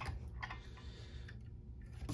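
Quiet room tone: a low steady hum, with a faint click or two near the start.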